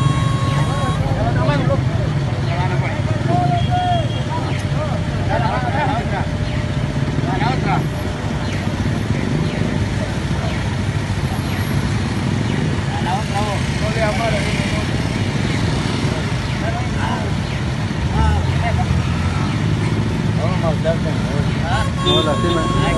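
Street traffic: vehicle engines running steadily close by, under scattered voices of people calling out.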